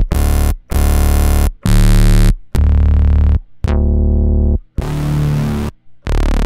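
Synth bass presets from the Bass Machine 2.5 Ableton rack's bass layer, auditioned one after another: six short held bass notes with brief gaps, each a different sound. One turns from bright to dull as it sounds, and the one near the end is rougher and gritty.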